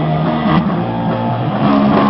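Punk rock band playing live, with electric guitars and a drum kit going steadily through the song.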